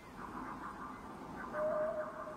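Cartoon creature vocal effects: quick chittering squeaks, then a louder, held whine about a second and a half in.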